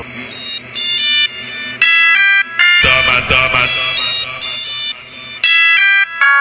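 Brazilian funk montagem music: a melody of short pitched notes stepping up and down, with deep bass coming in just under three seconds in.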